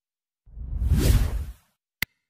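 Whoosh sound effect: a rush of noise that swells and fades over about a second, followed right at the end by a short, sharp click.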